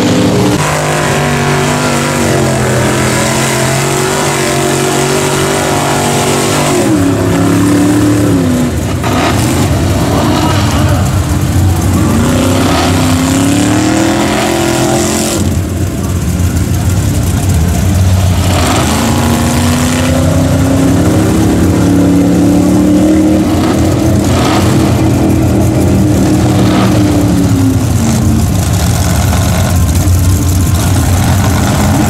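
Mega mud truck's engine held hard in the throttle as it pushes through deep mud. The revs climb and drop back several times, with long pulls in the middle and second half.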